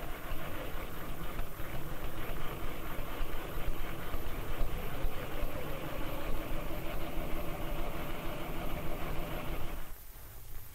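Sewing machine running steadily, stitching a turned-under hem on the edge of a dress facing. It starts abruptly and stops shortly before the end.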